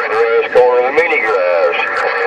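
A man's voice coming through a Uniden Grant LT CB radio's speaker on channel 11, thin and mixed with static and too garbled to make out: a long-distance skip signal.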